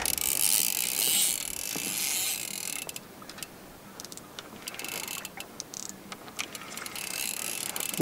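Spinning reel's drag ratcheting as a hooked rainbow trout pulls line against the bent rod. It buzzes steadily for about the first three seconds, then breaks into scattered clicks.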